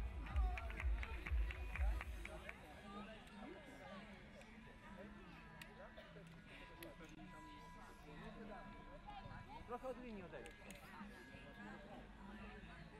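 A team huddle shouting together with quick rhythmic clapping for the first two seconds or so, then faint voices of players calling to one another across the pitch.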